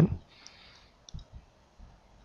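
A few faint clicks and soft low taps, with a brief faint hiss, during a pause in speech.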